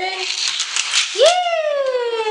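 A rattle of a die-cast toy car on plastic Hot Wheels track for about a second, followed by a high, drawn-out vocal whine that rises sharply and then slowly falls.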